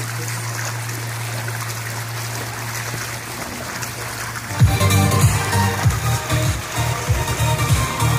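Steady trickle and wash of backyard pool water over a constant low hum, then electronic dance music with a strong beat comes in suddenly a little past halfway and is loudest from then on.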